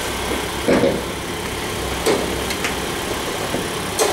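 2017 Mitsubishi ASX's engine idling with a steady low hum, broken by a couple of short knocks about one and two seconds in.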